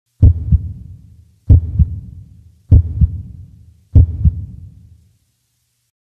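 Heartbeat sound effect: four deep double thumps about one and a quarter seconds apart, each dying away.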